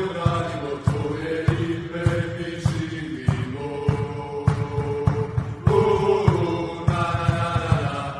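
Background music: chant-like vocals held over a steady beat.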